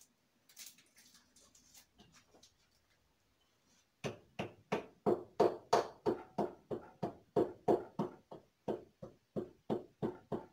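Wooden pestle pounding in a wooden mortar, crushing Maggi stock cubes: steady thuds about three or four a second, starting about four seconds in. Before that, faint rustling and clicks as the cubes are unwrapped.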